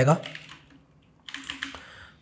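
Computer keyboard keys being typed: a short run of quick, faint keystrokes beginning a little over a second in.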